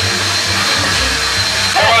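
Shop vacuum running steadily: a continuous rushing whine with a thin, steady high whistle.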